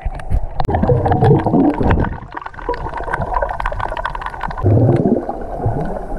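Underwater sound picked up by a camera held below the sea surface: low gurgling and sloshing of moving water, with many sharp clicks and crackles throughout.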